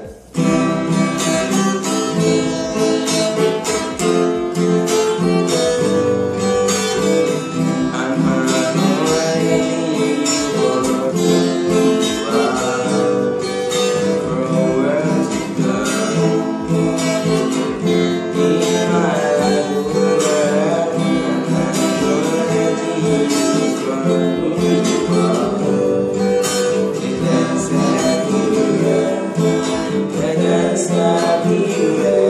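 Acoustic guitar strummed through a slow, simple chord progression, with singing over it.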